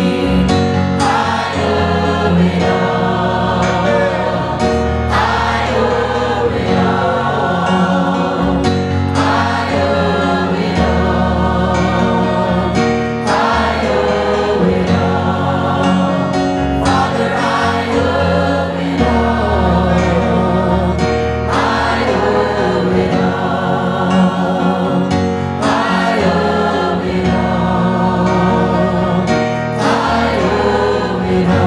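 Church choir singing a gospel song, led by a male singer on a handheld microphone, over steady instrumental backing. The music runs in sustained phrases that break every few seconds.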